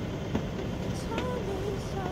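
A sailing yacht's inboard engine running steadily at low speed, a continuous low rumble. A faint voice is heard in the background from about halfway through.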